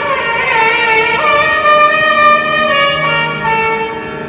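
Nagaswaram, the South Indian double-reed wind instrument, playing a Carnatic melodic phrase of long held notes joined by sliding pitch ornaments, over a steady low drone.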